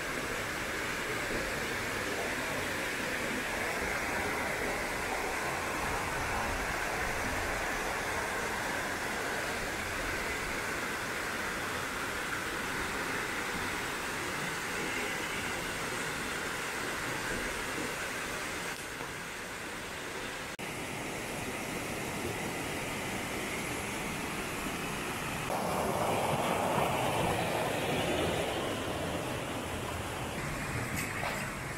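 Small waterfall pouring into a rock pool: a steady rush of falling water. Near the end it gets louder, as a shallow stream runs over rocks.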